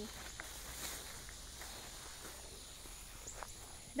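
Faint rustling of tomato plant foliage with scattered soft clicks and snaps as cherry tomatoes are picked by hand.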